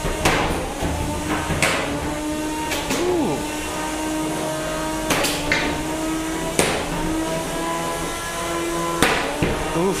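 Spinning drum weapons of two 3 lb combat robots whining at a steady pitch, broken by sharp metallic hits every second or two as the drums strike each other, with a pair of quick hits in the middle and a strong one near the end.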